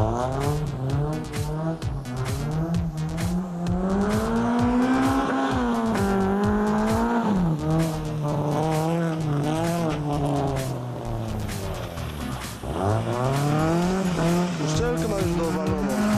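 Rally car engine revving hard through a dirt course, its pitch climbing and falling with the driver's throttle and gear changes: a drop about halfway through, then a deep dip and a fresh climb near the end. A spatter of short clicks from the tyres on the loose surface runs under it.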